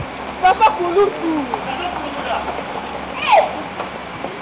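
A Mitsubishi minivan's engine idling with a steady low rumble, as voices call out over it.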